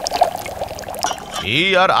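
Liquid pouring in a steady stream: tea being poured at a tea stall's stove. A man starts speaking near the end.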